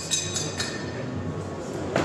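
Background chatter of a busy hall with a low steady hum. A few light clicks in the first half-second come from a knife being handled.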